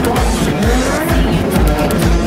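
Loud rock band music with a heavy, steady drum beat.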